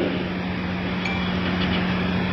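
Steady electrical hum with hiss from a microphone and public-address system, heard in a pause between sentences of a speech.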